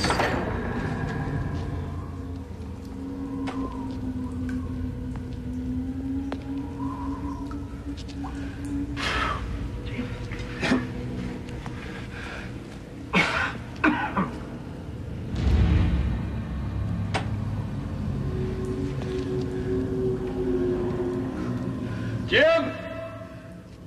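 Dark suspense film score: a low steady rumble with long held tones, opening on a heavy bang and broken by several sharp hits about nine, thirteen and fourteen seconds in, with a heavy low thump near sixteen seconds.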